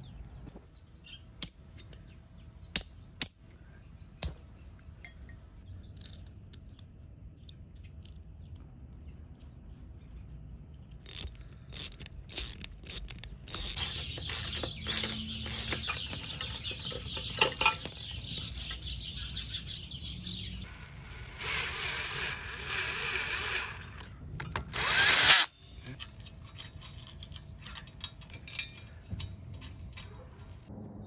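Hand tools on metal bike parts: scattered sharp metal clicks and clinks at first, then a stretch of dense clicking with a hiss in the middle. A loud burst of noise about a second long comes near the end.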